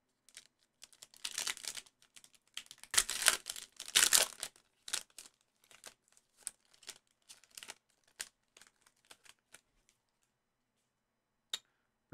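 A foil trading card pack (2021 Panini Prizm WNBA) being torn open and crinkled, in bursts that are loudest about three to four seconds in, followed by scattered light clicks as the stack of cards is pulled out and handled.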